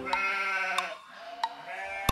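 Cartoon sheep sound effect bleating twice: a long baa, then a second starting near the end. A light tick comes about every two-thirds of a second.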